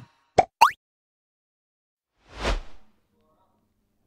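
Two quick popping sound effects about half a second in, the second rising in pitch. About two seconds in comes a short whoosh that swells and fades.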